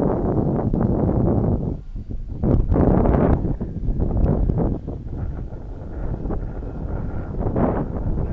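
Wind buffeting the microphone in uneven gusts, with a faint steady whine, likely the distant RC plane's electric motor, showing through in the second half.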